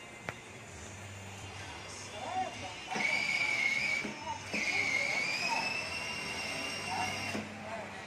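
Built-in speaker of a children's electric ride-on motorcycle playing electronic music, with a high held tone from about three seconds in until near the end.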